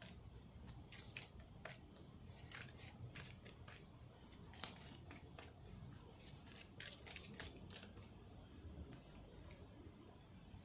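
Oracle cards being shuffled by hand: a run of quick, light snaps and riffles, with one sharper snap about halfway through.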